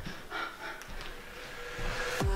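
A woman breathing hard between jumping lunges, with faint puffs of breath in a quiet gap in the background music.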